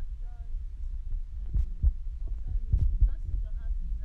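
A steady low hum with several dull knocks, and faint voices in the background.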